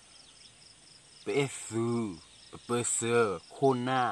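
A man talking from about a second in, over a steady, faint, rhythmic chirping of crickets in the background.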